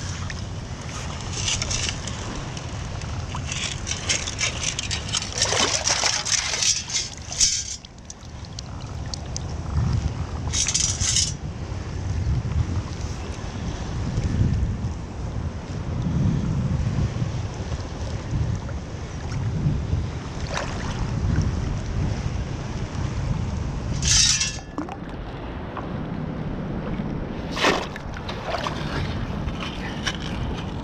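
Shallow water sloshing and splashing around wading legs and a long-handled sand scoop, with wind buffeting the microphone; a few short, sharper splashes break through, about a third of the way in and twice near the end.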